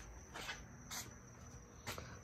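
Near-quiet room tone with a faint, steady high-pitched tone and three soft, short clicks spread across two seconds.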